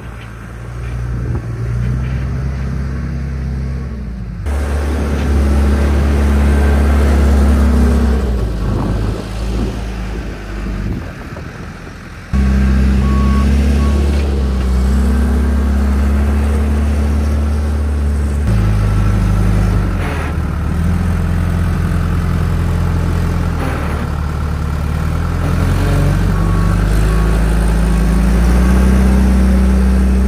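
John Deere 310G backhoe loader's four-cylinder diesel engine working under load, its pitch stepping up and down as the throttle changes, with a sudden rise about twelve seconds in. Brief beeping from the machine comes about eleven seconds in and again near the end.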